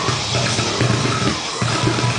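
Brutal death metal: fast, dense drums and distorted band sound, with an Ibanez SR506 six-string electric bass plucked fingerstyle in quick runs of low notes.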